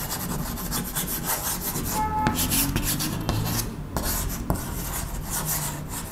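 Chalk writing on a chalkboard: a quick run of short scratching strokes as words are written out.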